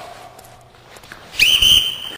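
A hockey coach's whistle gives one sharp, steady, high-pitched blast starting about one and a half seconds in, signalling the start of a drill.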